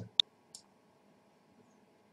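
A computer mouse clicking once, sharp and short, just after the start, followed by a much fainter tick about half a second in.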